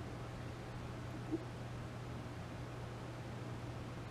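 Faint steady hiss with a low drone underneath from an NRI Model 34 signal tracer's speaker as its tuning dial is turned between AM stations, with a brief blip about a third of the way in.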